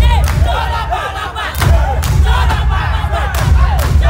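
A loud crowd shouting and screaming over deep, heavy bass thumps during a live dance performance.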